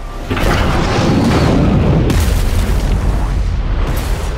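Movie-trailer sound design: a deep boom about a third of a second in swells into a sustained rumbling roar, with a second surge at about two seconds and a sharp hit just before the end.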